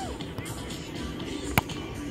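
A beach volleyball struck once with an open hand on a serve: a single sharp slap about one and a half seconds in, over a steady background of music and outdoor noise.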